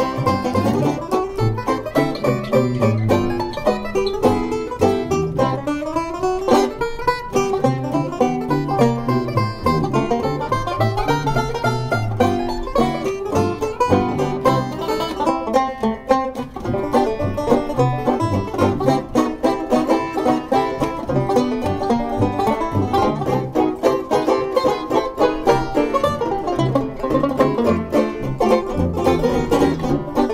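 Tenor banjo and plectrum banjo playing a fast 1920s-style jazz tune together in quick picked chords and runs, over a tuba bass line.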